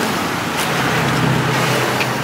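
Road traffic with cars and a van passing close by: a steady rush of engine hum and tyre noise, with the low hum growing louder about halfway through as a vehicle goes past.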